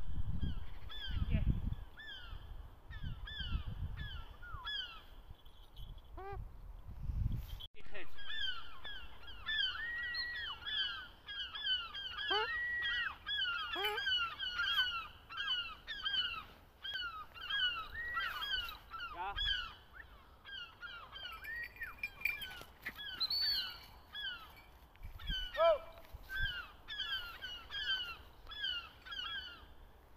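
Birds calling: many short, falling calls repeated several times a second and overlapping, with a few lower swooping calls mixed in.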